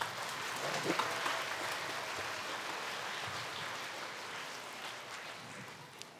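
Theatre audience applauding, a steady clatter of clapping that slowly dies away toward the end.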